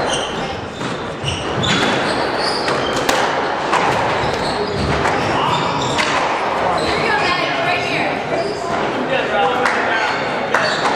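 Squash ball being struck and hitting the court walls during a rally, a few sharp cracks a few seconds apart, ringing in a large hall, over steady indistinct voices.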